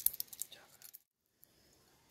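Dry cornflakes crackling as they are crumbled between fingers and sprinkled onto ice cream in a glass: a quick run of small crisp clicks in the first second. It breaks off into a brief dead gap, followed by faint room tone.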